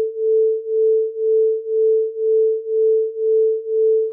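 Acoustic beats: two pure sine tones of nearly the same pitch played together, heard as one steady mid-pitched tone that swells and fades evenly about twice a second. The throbbing is the interference of the two waves, and its rate of about two a second means the tones differ by about 2 Hz.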